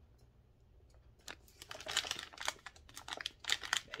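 Soft plastic pouch of disinfecting wipes crinkling as it is handled, starting about a second in as a quick run of crackles.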